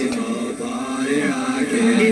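A song playing on a radio, with a long held sung note.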